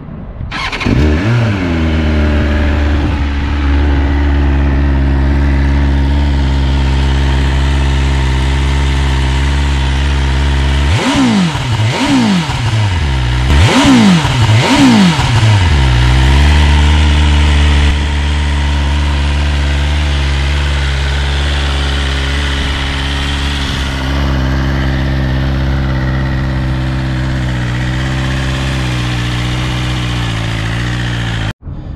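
BMW S1000RR's inline-four engine starting up about a second in and settling into a steady idle. Partway through it gets four quick throttle blips, each rising and falling in pitch, then drops back to idle.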